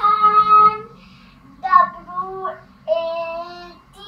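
A young girl singing three short phrases in a high voice, each note held for under a second, with brief pauses between them.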